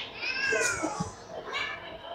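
A faint, high-pitched mewing cry that rises and then falls, followed about a second later by a shorter second cry.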